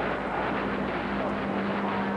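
Static hiss from a radio transceiver's speaker, a weak, fading signal barely above the noise with a faint steady low hum tone under it.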